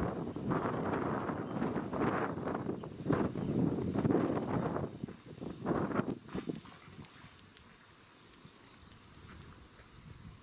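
Footsteps on a paved path, shuffling and uneven, stopping about six and a half seconds in.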